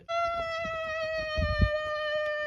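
One long, steady, high-pitched vocal cry held on a single pitch, with a couple of soft low thumps about halfway through.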